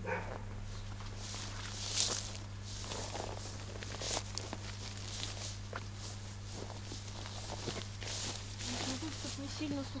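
Footsteps crunching through dry grass and dry branches crackling and snapping as they are handled at a brush pile, in irregular sharp strokes.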